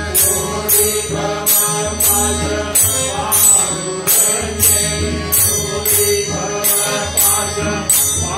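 A group singing a Hindu devotional bhajan together, with tabla drums and bright metallic cymbal strokes keeping a beat of about two a second.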